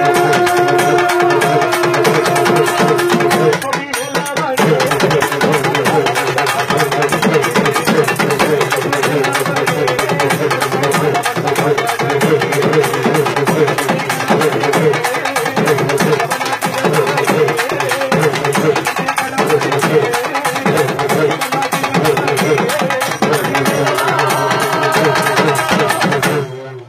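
Urumi melam folk drum ensemble playing a fast, dense, continuous rhythm. A held pitched tone sounds over the drums for the first few seconds, and the playing breaks off briefly about four seconds in before going on.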